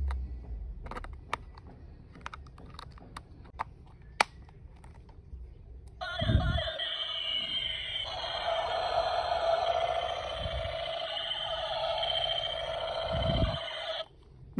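Light plastic clicks and snaps as the battery-powered toy rifle is handled and its batteries fitted. About six seconds in, the toy's electronic gun sound effect starts through its small speaker: a warbling, buzzing tone that carries on to the end, with a couple of low knocks from handling.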